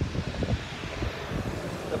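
Outdoor background noise: wind rumbling unevenly on the microphone over a steady hiss.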